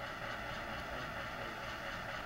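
N-scale model train rolling slowly along the layout track: a steady, even running noise with no distinct pitch.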